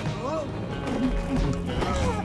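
Background music with a man's voice singing or vocalising swooping high notes that rise and fall in pitch, twice.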